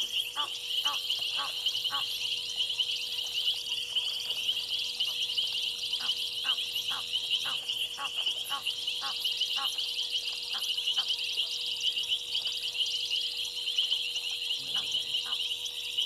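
Egyptian goose calling in rapid runs of short honks, about four a second, in several bouts. Under them runs a steady, shrill chorus of night insects.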